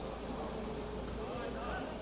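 Steady buzzing drone over open-air football pitch ambience, with faint distant voices of players.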